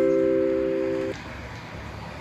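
The held chord of a vibraphone-like mallet chime rings on and cuts off abruptly about a second in, leaving a quieter low rumble of street sound with a vehicle engine.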